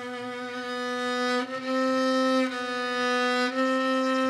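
Solo violin, bowed, holding one low sustained note throughout, with a barely audible join about every second where the bow changes direction. The note grows louder after about a second and a half. This is a demonstration of smooth, connected bow changes that should go unnoticed.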